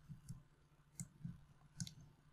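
Faint clicks of a computer mouse or trackpad while navigating a document on screen: three short sharp clicks about half a second to a second apart, with soft low thumps alongside.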